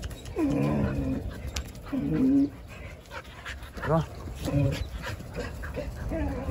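Jindo dogs giving several short vocal calls with pauses between them, the longest lasting most of a second near the start.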